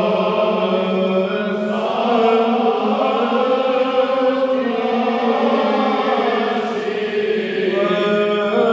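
Greek Orthodox Byzantine chant sung by several voices, melody lines moving slowly over a steady held drone note.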